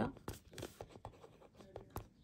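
Pen writing on paper: a run of short, irregular scratching strokes.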